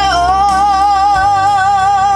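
A woman singing one long held note, on the word "know", with an even vibrato over a backing track with a steady bass line.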